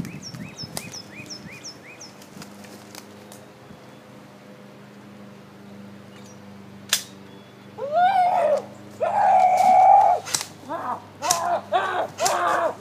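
A bird chirps repeatedly at first. About seven seconds in comes a single sharp crack, followed by loud wordless hooting calls, some rising and falling and one held: a person imitating an ape, with a few more sharp cracks among them.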